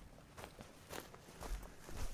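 A series of footsteps on dry, stony ground.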